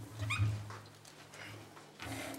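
A chair squeaking briefly as a person sits down at a table: one short squeal rising in pitch, then a fainter second one, over a low steady hum.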